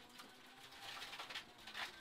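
Faint, muffled running noise of the Toyota 4A-GE 20-valve Corolla rally car at speed, a low steady hum with light ticking.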